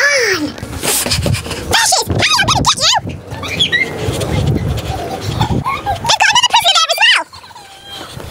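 Shrill screams that bend up and down in pitch, in two bouts: one about two seconds in and a longer, wavering one near the end.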